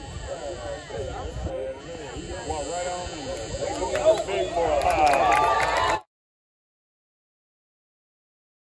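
Several spectators' voices, indistinct chatter and calls that grow louder near the end, then the sound cuts off abruptly about six seconds in, leaving dead silence.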